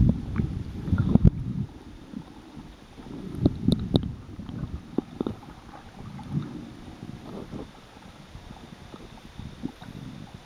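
Muffled underwater sloshing and rumble from shallow surf, heard through a camera held under water, with a few dull knocks; it swells about a second in and again about three and a half to four seconds in.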